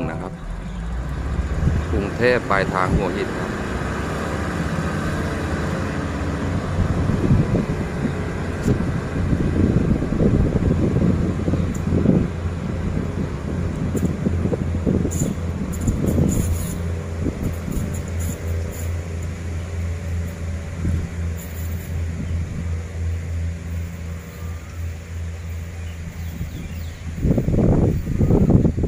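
Diesel railcar train's underfloor engines running with a steady low drone as the train pulls out and moves away. A rumble of wheels on the track rises in the middle, with a few sharp clicks. The drone fades out near the end.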